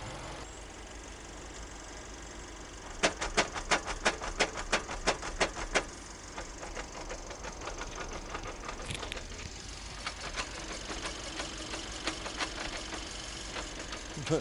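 Mercedes GLA seven-speed dual-clutch gearbox knocking during its adaptation. A rapid run of loud, sharp knocks comes about three a second over the steady hum of the running engine, then fainter knocks follow. The knocks are far harsher than normal adaptation noise, as if someone underneath were hitting the gearbox with a crowbar: the fault behind the complaint of loud gear changes.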